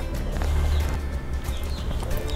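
Background music playing, with no clear sound of the kneading over it.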